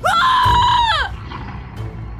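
A woman screaming: one loud, high, held cry about a second long that drops in pitch as it breaks off, followed by low background music.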